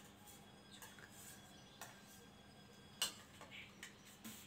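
Near silence: quiet room tone with a few faint sharp clicks, the clearest about three seconds in.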